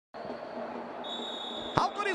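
Stadium crowd hubbub with a referee's whistle blown for kickoff, one long steady blast starting about a second in. A sharp knock near the end is the loudest moment.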